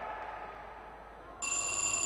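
Boxing ring bell sounding the start of the round: a sudden, steady, bright ringing that starts about one and a half seconds in, over faint arena ambience.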